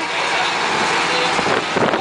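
A run-down local bus driving, heard from inside the passenger cabin: steady engine and road noise with no break.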